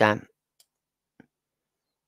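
A spoken word trails off, then two faint computer-mouse clicks about half a second apart.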